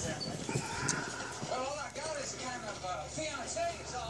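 Faint, indistinct voice talking in the background of a quiet room, with a few light taps in the first half-second.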